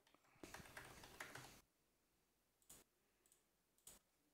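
Faint computer keyboard typing and mouse clicks: a quick run of keystrokes in the first second and a half, then a few single clicks.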